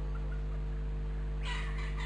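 Steady low hum from the recording, with two short, harsh bird calls in the background near the end.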